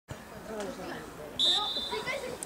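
One short, steady, high-pitched referee's whistle blast about a second and a half in, over the low talk of spectators by the pitch.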